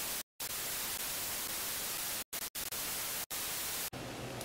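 TV static sound effect: a steady hiss of white noise, broken by four or so brief dropouts into silence, ending just before the cut.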